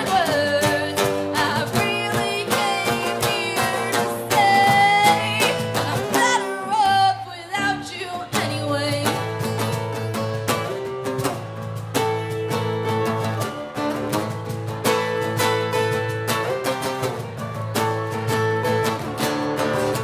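Live acoustic band: a woman singing over two strummed acoustic guitars. After about seven seconds the voice drops out and the guitars carry on alone, strummed in a steady rhythm.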